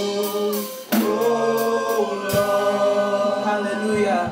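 A small group of singers on microphones singing a gospel worship song together, with a long held note starting about a second in.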